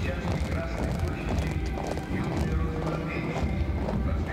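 Marching column of soldiers, their boots striking the cobblestone paving together in step.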